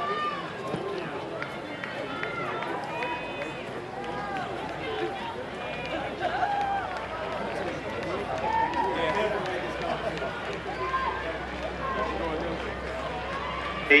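Spectators at a track race calling out and shouting from the stands, many overlapping voices at a steady level.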